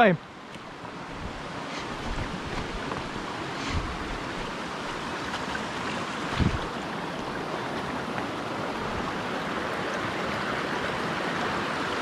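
Shallow rocky creek running over stones, a steady rush that grows gradually louder, with a single thump about six and a half seconds in.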